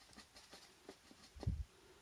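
Faint, scattered small clicks and scrapes of a paintbrush working acrylic paint on a plastic palette, with one short low thump about one and a half seconds in.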